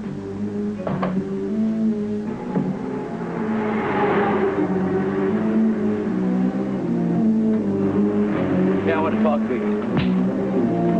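Dramatic background score with held notes that step from one pitch to the next, with a brief noisy swell about four seconds in.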